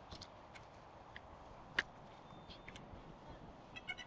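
Faint handling clicks, the loudest a little under two seconds in, then a short run of high electronic beeps near the end: a DJI Neo mini drone powering on.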